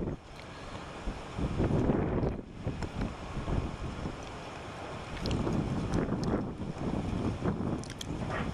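Gusty wind buffeting the microphone, swelling and easing in gusts, with a few faint clicks.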